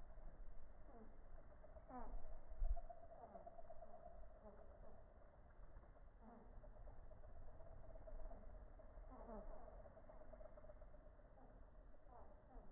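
Faint steady hum of hummingbird wings as several birds hover and feed at a nectar feeder, with short falling notes now and then. A low rumble of wind on the microphone runs underneath and is loudest about two and a half seconds in.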